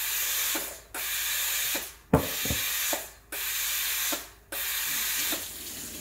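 Breville Oracle BES980 steam wand auto-purging after being pushed down: five bursts of hissing steam, each just under a second long, with short gaps between them. A sharp click about two seconds in.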